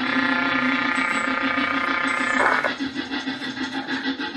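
Live noise music: a low pulsing drone runs throughout. A held, steady tone sits over it and breaks off with a short burst of noise about two and a half seconds in.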